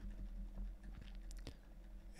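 Quiet room tone with a faint steady low hum, broken by a few faint clicks about a second and a half in.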